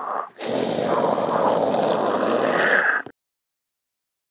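A harsh, breathy rushing noise made with the mouth. It comes as a short burst, then a sustained rush of about two and a half seconds that cuts off abruptly.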